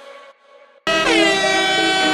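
Background music drops to a quiet stretch. Then, just under a second in, a loud horn-like blast cuts in suddenly, its pitch sliding down briefly before it holds steady.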